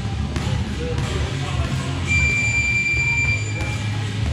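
Boxing gym round timer sounding one steady, high electronic beep about a second and a half long, starting about two seconds in, over background music.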